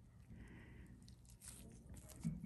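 Near silence: room tone, with a few faint soft ticks.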